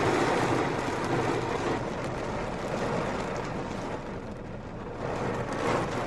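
Heavy rain beating on a car's roof and glass, heard from inside the cabin: a dense, steady hiss that eases a little partway through.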